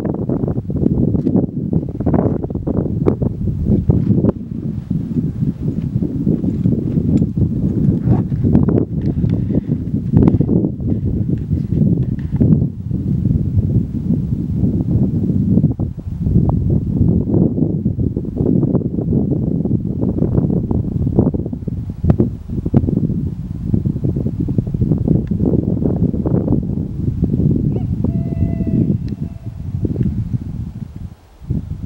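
Wind buffeting the microphone on an exposed mountain snow slope: a loud, uneven low rumble that rises and falls in gusts.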